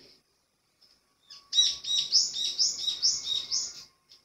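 A songbird singing a quick run of about eight high, repeated chirps, about four a second, starting about a second and a half in and lasting a little over two seconds.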